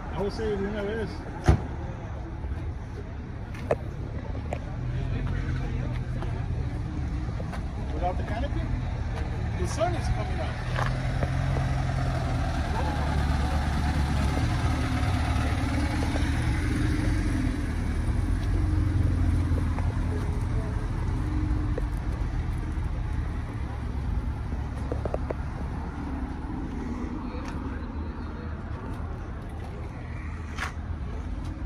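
A vehicle engine running nearby at a steady, low idle. It swells a little in the middle before easing off, with faint voices in the background.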